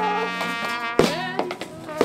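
Live horn playing with a buzzing, reedy tone: several held notes that waver slightly in pitch, broken by a few sharp knocks, the loudest about a second in.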